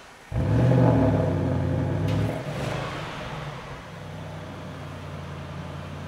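Audi RS6 Avant's twin-turbo V8 starting up: it catches suddenly and flares to high revs for about two seconds, then settles down to a steady, quieter idle.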